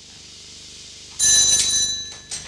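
A shrill shaft signal sounds suddenly about a second in: a loud, bell-like ringing of several high steady tones, lasting under a second. It is a signal from the shaft to the steam winding-engine operator of a coal-mine headframe winder, telling him to work the winding engine. Before it, only a faint low hum.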